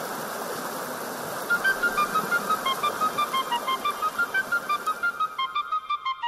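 Rushing mountain stream tumbling over rocks. About a second and a half in, background music joins it: a quick, high melody of short notes that becomes the loudest sound. The water noise drops away near the end.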